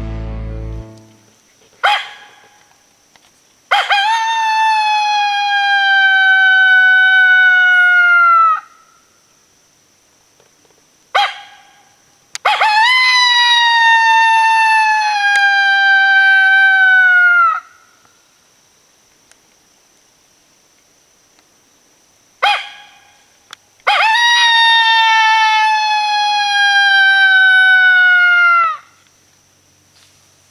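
Two-reed pup howler mouth call imitating a coyote howl to call coyotes in: three long howls about ten seconds apart. Each starts with a short sharp yip, then holds high and slides slowly down in pitch before dropping off at the end.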